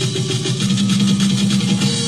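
Live band playing a Latin pop song, with a steady drum and percussion beat under sustained low instrumental tones.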